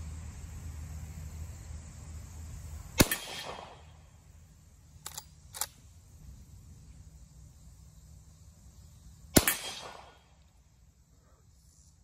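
Two rifle shots from a Marlin 1894 lever-action in .45 Colt, about six seconds apart, each followed by a short echo. Two sharp clicks come about two seconds after the first shot, half a second apart: the lever being worked to chamber the next round.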